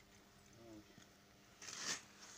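Mostly quiet, with a faint pitched voice-like sound about half a second in and a short rustle near the end.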